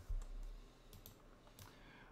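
A few light, scattered clicks of a computer mouse and keyboard.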